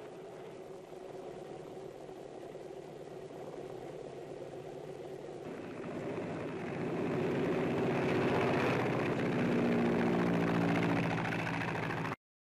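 L-4 liaison plane's single piston engine running, growing louder from about six seconds in as the plane makes its takeoff run, with the pitch shifting near the end.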